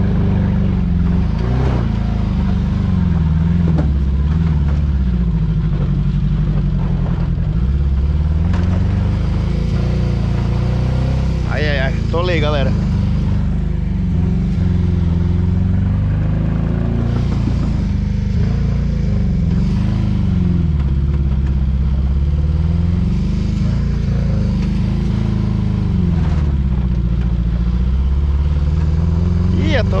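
Ford Ka engine pulling the car up a steep dirt track, its pitch rising and falling again and again as the throttle is worked. The engine has a persistent misfire and lacks power: a new fuel pump did not cure it, and a mechanic suspects a bad ignition coil.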